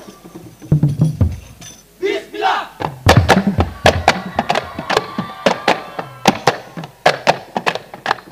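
Hand-struck rebana frame drums of a hadrah ensemble: after a short break with a few low thumps, a voice calls out briefly about two seconds in, then the drums come back in about a second later with sharp strikes in a brisk rhythm, about three a second.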